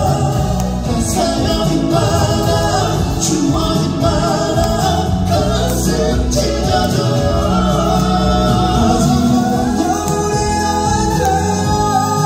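Male vocal trio singing a ballad together into microphones over an instrumental accompaniment with drums and bass, amplified live in a concert hall.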